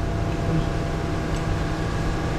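Steady mechanical hum, like a ventilation fan running, under a noisy background with faint voices.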